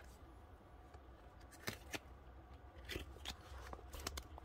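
Faint handling of a small stack of Pokémon trading cards in the hands, with a few soft flicks and slides of card against card, the clearest about a second and a half in and twice near three seconds.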